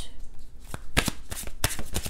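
A deck of tarot cards being shuffled by hand: a run of irregular quick card clicks and slaps.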